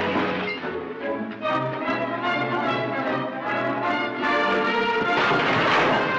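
Dramatic orchestral film music, with a loud rush of noise swelling near the end.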